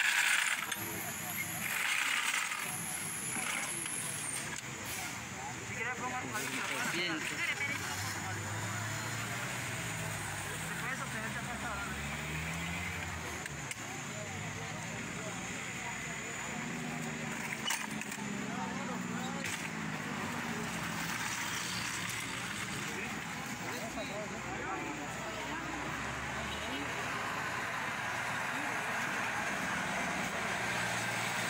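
Indistinct voices of onlookers talking in the background over a steady outdoor hiss of noise, picked up on a phone's microphone.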